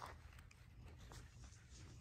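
Near silence, with a faint low background hum and a few faint soft clicks.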